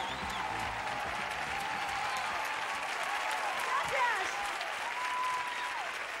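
Studio audience applauding as the song finishes, with the last of the music fading out about a second in and a few voices calling out over the clapping near the end.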